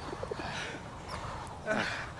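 A frightened man whimpering under his breath, then letting out a short groan near the end, over a steady hiss.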